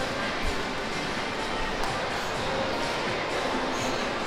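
Shopping mall ambience: background music playing over faint distant voices, steady throughout with no distinct events.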